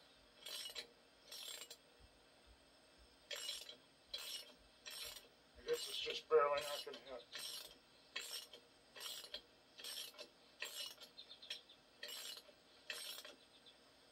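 Wrench cranking the forcing bolt of a brake drum puller on a tractor's rear hub, a short metallic rasp with each stroke, about one every three-quarters of a second.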